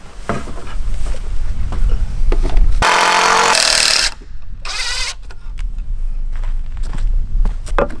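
Cordless drill driving a screw into a wooden framing board: one run of about a second near the middle, then a shorter second burst. Scattered light knocks of wood being handled around them.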